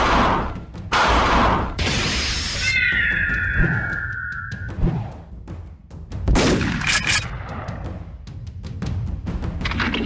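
Dubbed fight sound effects: crashes, a shattering noise and heavy thuds, with a falling tone about three seconds in and another loud crash past the middle, all over dramatic background music.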